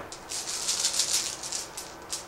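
Bolt Action order dice rattling in a dice bag as a hand shakes and rummages through it to draw the next die: a quick, dense rattle lasting about a second and a half.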